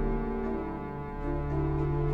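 Pipe organ playing chords that move over a deep, held pedal note.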